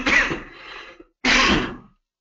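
A man clearing his throat and coughing, in two loud bursts: one at the start and one just past the middle.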